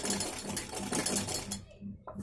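A black domestic sewing machine stitching cord loops onto fabric, its needle running in an even rhythm of about three to four strokes a second, then stopping about one and a half seconds in.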